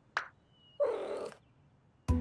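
A cartoon cat character's short vocal grunt, lasting about half a second, about a second in. Just before it comes a very brief falling zip of a sound effect.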